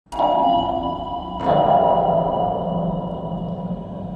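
Two electronic sonar-style pings about a second and a half apart, each ringing out in a long fading tail.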